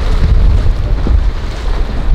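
Loud wind rumble on the microphone over the rush of water and the outboard motor of a Grady-White walkaround boat running at speed through choppy water.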